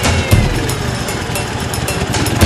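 Dnepr MT16 sidecar motorcycle's flat-twin engine running at low revs.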